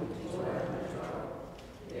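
Congregation reciting a psalm verse together, many voices speaking in unison. The voices ease off briefly about a second and a half in, then pick up again.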